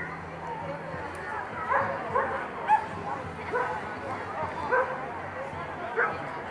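A small dog yapping about five times, the sharpest yap near the middle, over crowd chatter.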